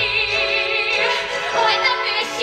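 A woman singing a musical-theatre song over instrumental accompaniment. She holds a note with wide vibrato for about the first second, then moves on to shorter notes.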